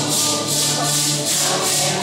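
Maracas shaken in a steady, even rhythm beneath a congregation holding sung notes of a Santo Daime hymn.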